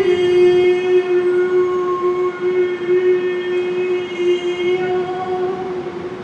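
One long musical note held at a steady pitch for about six seconds, rich in overtones, easing off slightly near the end.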